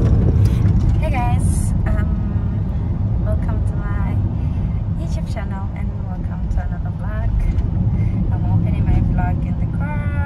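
Steady low rumble of road and engine noise inside a moving car's cabin, with a woman talking over it.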